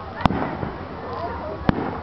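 Two aerial firework shells bursting, two sharp bangs about a second and a half apart.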